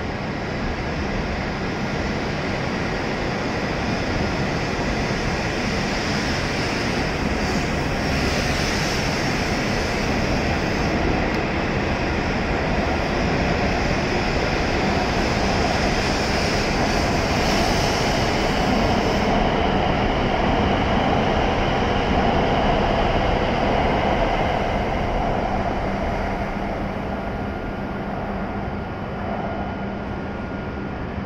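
E7 series Hokuriku Shinkansen train departing and picking up speed past the platform, with a steady rolling and running noise. A high-pitched whine sounds from about six to nineteen seconds in. The noise grows louder toward the twenty-second mark, then fades as the train clears the platform near the end.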